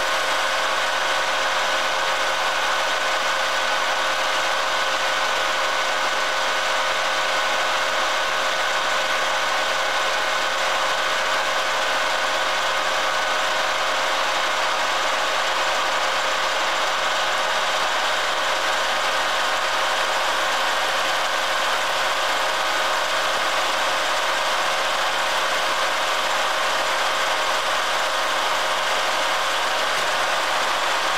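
Vertical milling machine running steadily: an even mechanical noise with a constant whine that does not change.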